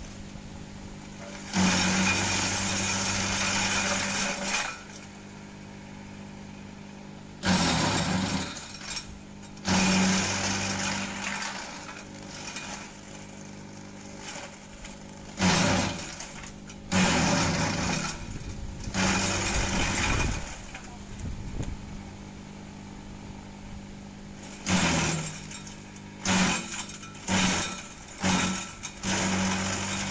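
Kelani Komposta KK100 compost shredder's motor running with a steady hum while gliricidia branches are fed in. Each feed brings a loud burst of chopping and shredding, the longest about three seconds, with several short bursts in quick succession near the end.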